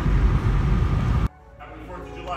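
Low rumble of a car's cabin on the move, cut off suddenly a little over a second in. After the cut it is much quieter, with the faint start of a music track.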